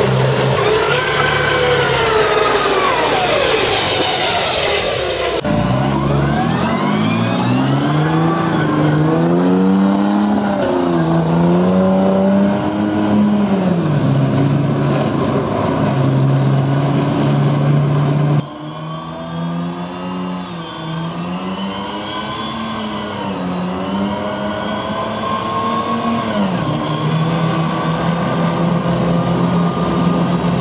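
CVR(T) light tracked armoured vehicle's engine driving past on the road, its pitch rising and falling again and again as it accelerates and changes gear. The sound cuts abruptly to another pass about five seconds in and again at about eighteen seconds, a little quieter after the second cut.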